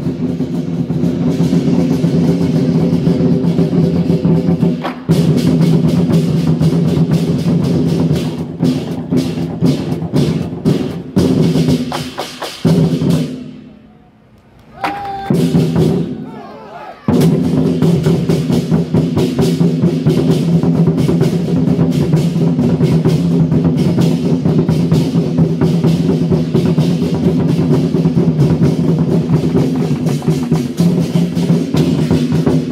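Temple war drum troupe (戰鼓團) beating large drums in fast, dense rolls with a deep ringing boom. About halfway through the drumming breaks off and falls away for a few seconds, then comes back in at full force.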